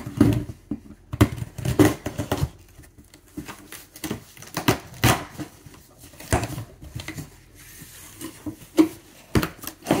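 Irregular rustling and knocking of packaging as items are taken out of a large cardboard shipping box, with a few sharper clacks about a second, five seconds and nine seconds in.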